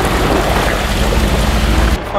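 Muddy water spraying and churning from a 4x4's front tyre as it drives through a shallow pool, with a steady low rumble underneath.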